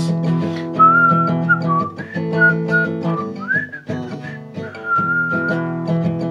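Acoustic guitar strummed steadily while a person whistles a wavering melody over it, in two phrases with a short break between them.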